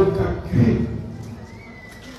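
A man's voice through a microphone in a drawn-out, chanted phrase that ends about a second in.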